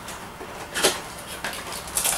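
Small cardboard boxes and packaging being handled, with one short, sharp knock a little under a second in.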